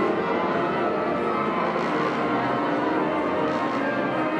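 School concert band playing a sustained passage, with bright ringing bell tones in the mix.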